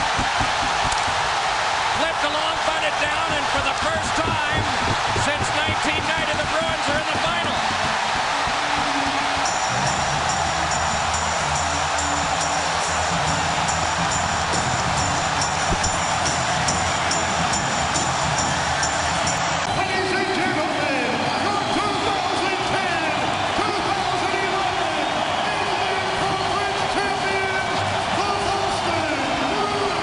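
A packed hockey arena crowd cheering and roaring as a Game 7 win runs out. About ten seconds in, a steady horn sounds over the crowd for about ten seconds, then music plays over the crowd's continuing roar.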